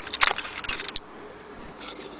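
Small metal Singer sewing-machine attachments clinking and rattling together in their cardboard accessory box as a hand sorts through them. There is a quick run of sharp jangling clicks in the first second, then a softer rustle near the end.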